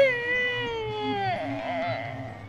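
A boy's long, drawn-out crying wail that holds its pitch, then slides down and breaks off about one and a half seconds in, trailing into a weaker, wavering sob.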